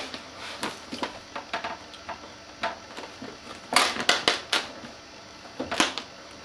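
Vinyl graphic film being handled and worked onto the hood: irregular crinkling crackles and sharp clicks, bunched most densely about four seconds in, with one more sharp crack near the end.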